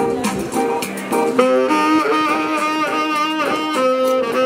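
A saxophone playing a jazzy melody of held notes with vibrato.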